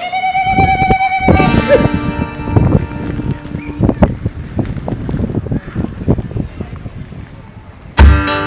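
A long held vocal whoop and a laugh, then an acoustic guitar strummed and picked lightly, the notes ringing and growing fainter, before loud strumming comes in right at the end.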